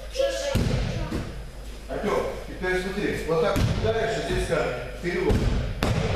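Bodies landing on a padded wrestling mat during breakfall and roll practice: about four dull thuds, with a sharp slap near the end, under voices talking in the hall.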